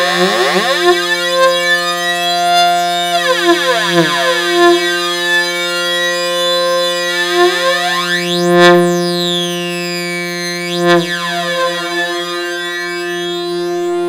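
Sustained modular synthesizer drone fed through a Moon Modular 530 stereo digital delay set for flanging. A modulated short delay time sweeps a whooshing comb-filter effect up and down through the tone several times.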